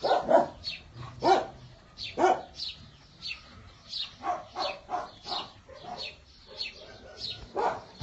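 Dogs barking in short, repeated barks, about two a second.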